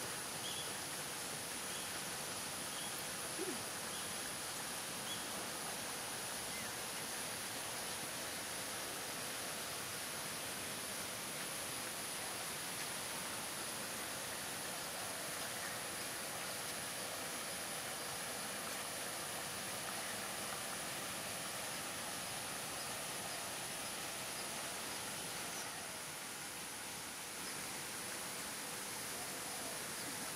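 Steady outdoor background hiss with a constant thin high whine. A bird calls a short high note about once a second for the first few seconds.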